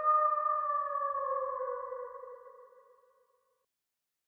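A sustained electronic tone with a few pitches sounding together, sinking slightly in pitch as it fades away, gone about three seconds in.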